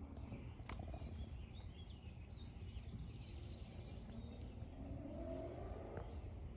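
Outdoor background with a steady low rumble and faint bird chirps; an engine rises steadily in pitch through the second half, like a vehicle pulling away nearby. A single sharp click comes just under a second in.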